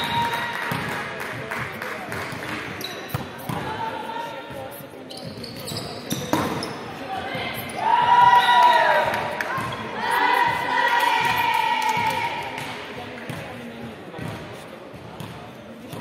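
Volleyball rally on an indoor hardwood court: the ball struck by hands and hitting the floor, with sneaker squeaks and players' calls. The sound is loudest around the middle of the rally.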